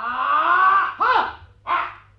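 Loud shouted cries from karate students training: one long shout, then a short one that rises and falls in pitch, and a brief third near the end.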